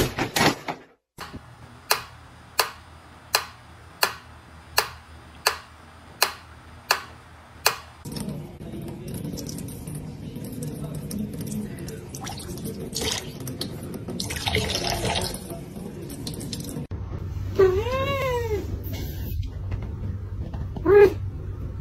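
A run of about ten sharp clicks, evenly spaced a little under a second apart. Then a thin stream of tap water running into a stainless steel sink, and near the end a single cat meow.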